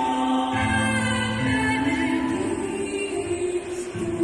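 Choir singing a slow piece in sustained chords; the lower voices step up in pitch about halfway through.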